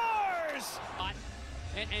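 A hockey commentator's long, held goal call of "scores!" falling in pitch and trailing off within the first half-second, then a low rumble of arena noise.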